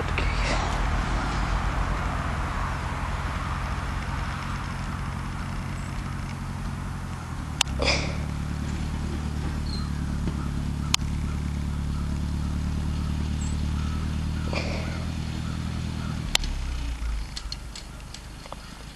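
Massey Ferguson 35 tractor engine running steadily as the tractor pushes snow with its front blade, with a few brief sharp sounds along the way. The engine note changes about eight seconds in and fades near the end as the tractor moves away.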